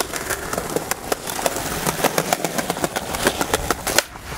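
Skateboard wheels rolling over stone paving: a steady rumble with many small clicks as they cross the slab joints. It ends with a sharp snap of the tail on the ground as the board is popped into a flip trick.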